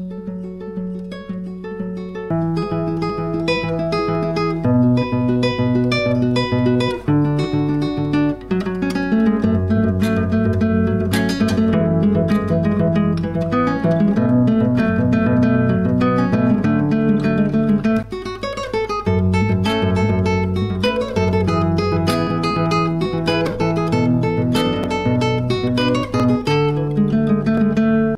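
Acoustic guitar played fingerstyle with a capo, a bass line under a picked melody of a pop tune, with a short break about two-thirds of the way through.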